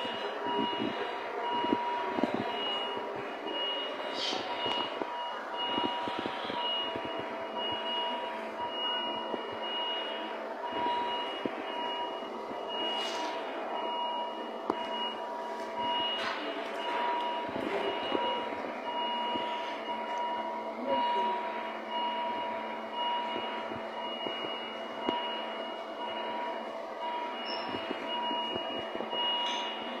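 A repeating electronic beep that pulses steadily throughout, over a noisy background with a few scattered knocks.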